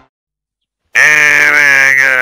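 Silence, then about a second in a man's voice starts a loud, long, drawn-out groan with a slightly wavering pitch.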